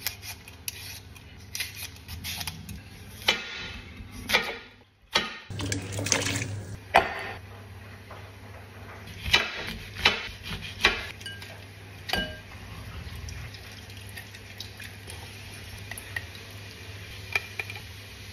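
Kitchen food-preparation sounds: a potato being peeled, a large knife cutting through lemons onto a cutting board, and dishes and utensils clinking, heard as scattered short knocks and clicks.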